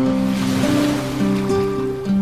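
Background music: held, chord-like notes that change every half second or so, over a soft hiss.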